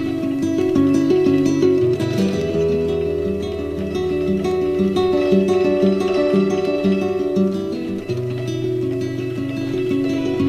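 Instrumental acoustic folk music: a picked acoustic guitar plays a repeating figure over a bass line, the chord changing about two seconds in and again near the end.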